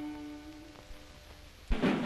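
The last held note of a song sung to slide guitar dies away over about a second. Near the end a sudden loud percussive hit breaks in as new music starts.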